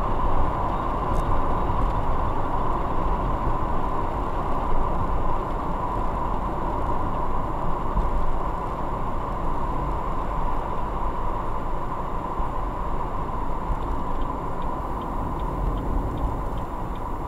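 Steady road and engine noise of a moving car heard from inside the cabin, a constant even rumble with a held tone in the middle.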